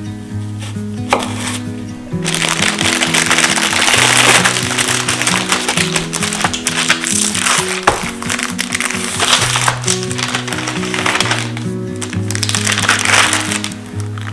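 Background music with slow held notes, over crinkling and rustling paper as folded sheets of pastry are unwrapped and unfolded on a cutting board; the rustling starts suddenly about two seconds in.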